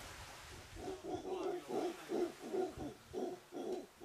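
Mantled howler monkey calling: a run of short, low, pulsed grunts, a little over two a second, starting about a second in.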